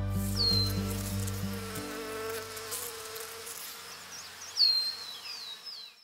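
Honey bees buzzing around a hive, under music that fades out over the first two seconds or so. High, falling whistles sound briefly at the start and again in a short run near the end, the loudest about four and a half seconds in.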